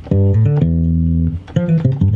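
A low-pitched sampled instrument from a software sampler, played as a few separate notes on a MIDI keyboard controller and heard through studio monitor speakers; the middle note is held for about a second. A producer is trying out sounds for a beat.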